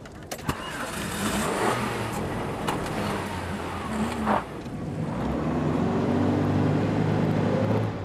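A car engine starting and revving, its pitch rising and falling, then running louder and steadier in the last few seconds, with a few light clicks along the way.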